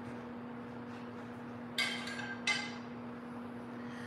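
Two short clinks of cookware being handled, about two-thirds of a second apart, over a steady low hum.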